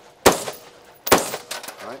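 Two rifle shots from a 5.56 mm AR-15 carbine, a little under a second apart, each ringing out briefly after the crack.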